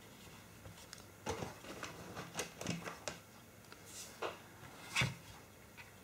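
Plastic battery charger being handled on a work mat: scattered faint clicks and knocks, the loudest about five seconds in.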